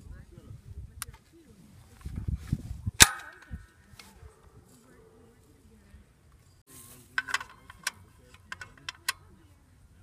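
Metal clacks from a spring-loaded clay pigeon thrower's arm and frame as it is handled and loaded. One loud clack with a short ring comes about three seconds in, after a low rumble. A run of lighter clicks follows near the three-quarter mark.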